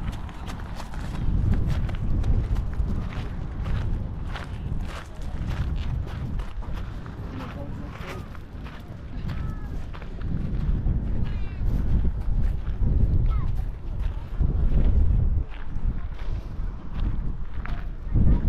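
Footsteps on gravel, with gusts of wind rumbling on the microphone.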